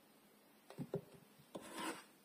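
A solid bar of soap being set down among other bars: two light knocks about a second in, then a short scraping rub as it slides into place near the end.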